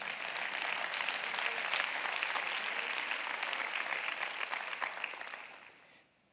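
Congregation applauding in a large hall, swelling over the first second, holding steady, then fading out near the end.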